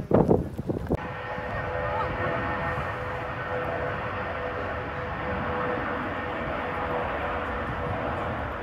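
Jet airliner on its takeoff roll heard from well off the runway: a steady, even roar with a faint tone running through it, starting abruptly about a second in.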